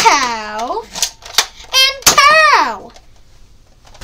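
A child's voice making falling "pow" shooting sounds, three times, with a few sharp clicks in between.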